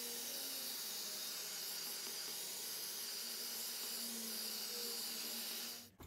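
Cheap Lidl handheld heat gun blowing hot air over wet acrylic paint: a steady hiss of air with a faint motor hum that cuts off suddenly near the end. The heat is popping cells in the fresh pour.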